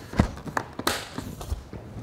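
Soft footsteps and a few light knocks and clicks as a motorcycle's hard side case is shut, the sharpest click about a second in.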